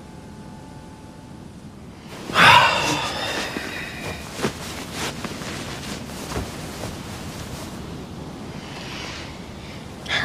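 A bed and its bedding rustling as someone lies down on it about two seconds in, followed by softer rustles and small knocks of pillows and covers as they settle.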